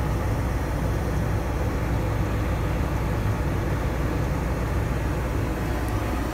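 Farm tractor engine running steadily, heard from inside the cab: an even low rumble with a steady hiss over it.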